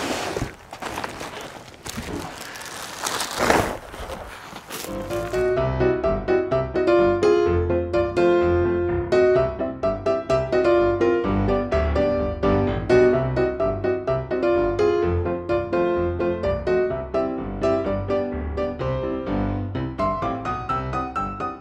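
Cardboard shipping box and foam and plastic wrapping handled, scraping and rustling, with a knock near the fifth second; then background music with a melody over a steady bass beat takes over for the rest.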